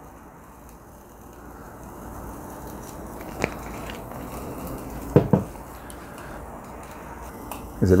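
Pork skewers sizzling on a small tabletop charcoal grill: a steady hiss that builds over the first few seconds, with two sharp clicks in the middle.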